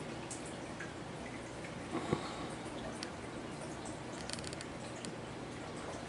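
Quiet room tone with a few faint, sharp clicks: one about two seconds in and a short cluster of light ticks a little after four seconds.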